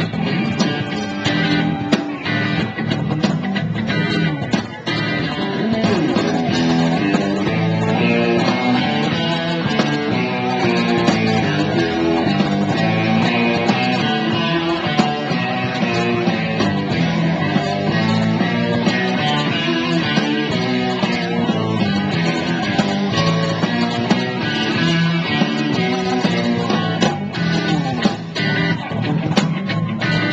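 A live band playing a guitar-led rock instrumental, electric guitar over bass, steady and loud, picked up by a small camcorder microphone.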